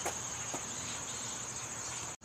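Insects chirring steadily outdoors, a continuous high-pitched drone, with a couple of faint ticks about half a second apart near the start.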